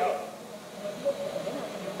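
A spoken word ends at the start, then a short pause holding only faint, steady hiss with a faint low hum.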